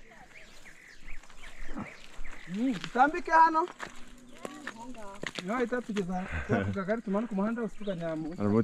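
Several people's voices talking, starting about two and a half seconds in, with a few sharp clicks among them.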